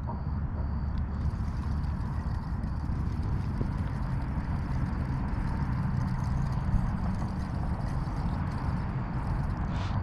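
Steady wind rushing and buffeting against the microphone, a low rough rumble with a fainter hiss over it.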